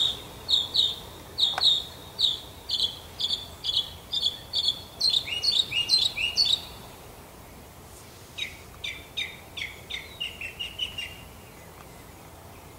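A songbird singing a long series of short, high, repeated notes, about three a second and speeding up, ending in a few sweeping notes. After a short pause, a second, lower series of quicker notes follows for a few seconds.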